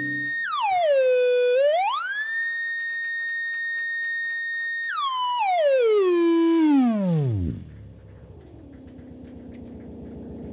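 A single pitched electronic tone, like a theremin or synth. It holds high, dips down and glides back up about two seconds in, holds again, then slides steadily down to a low pitch and dies away at about three quarters of the way through. A quieter low drone is left underneath.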